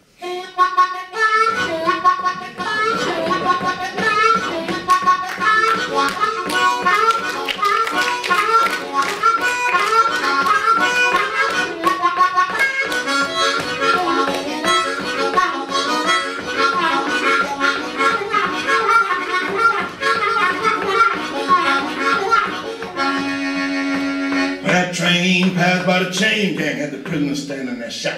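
Solo blues harmonica played with cupped hands into a microphone: fast runs of short, chopped notes with percussive breath attacks, starting about a second in. A man's voice comes in near the end.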